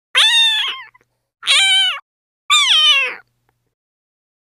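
A cat meowing three times, each meow under a second long with short silent gaps between; the last one falls in pitch.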